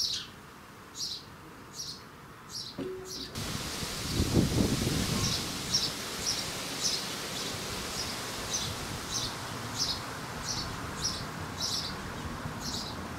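A house sparrow chirping over and over, a single short cheep about once a second at first, then about twice a second. About three seconds in, a steady hiss comes in, with a brief low rumble a second later.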